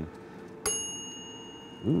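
A timer bell dings once with a single sharp, high, clear ring that fades over about a second, signalling that five minutes of cooking time are up.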